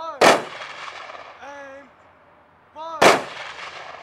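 Two loud, sharp bangs about three seconds apart, each dying away over about a second. Between them, a short pitched call that rises and falls repeats roughly every one and a half seconds.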